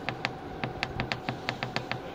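Rapid clicking, about six or seven clicks a second, from a button on the in-room heating and cooling unit being pressed over and over to raise the temperature setting.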